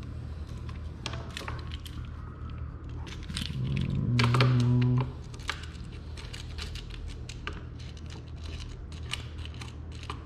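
Plastic handlebar camera mount being fitted and screwed tight onto a motorcycle handlebar: a run of small clicks and taps from the clamp. A brief low hum comes about four seconds in.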